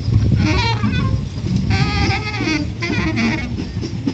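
Improvised sound-art performance: wavering, quavering pitched sounds in three short phrases over a low steady hum.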